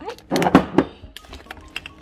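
Glass jars and containers being handled and set down on a pantry shelf: a quick cluster of knocks in the first second, then a few lighter clicks.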